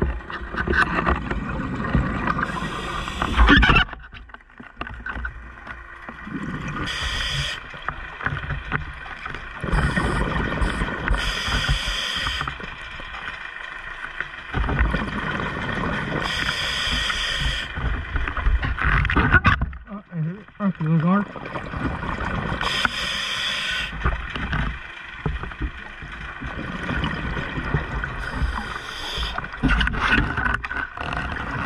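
Underwater sound of a scuba diver breathing through a regulator, with a burst of exhaled bubbles every five or six seconds. Underneath is a distant clanging from a scallop trawl being dragged along the seabed.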